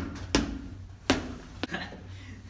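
A ball striking hard surfaces in a concrete corridor: two sharp, echoing impacts about three-quarters of a second apart, then a lighter knock near the end, over a steady low hum.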